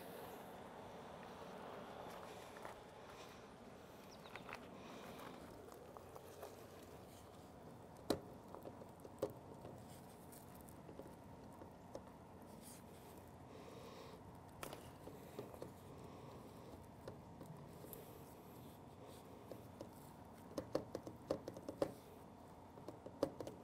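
Faint handling sounds of drip-irrigation tubing being forced onto a plastic tee fitting by hand: low rustling and scraping, with a few scattered sharp clicks and a flurry of small clicks near the end.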